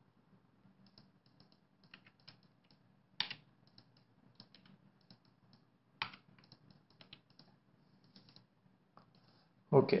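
Faint, irregular clicks and taps of a computer keyboard and mouse in use, with a couple of sharper clicks a third and two thirds of the way through.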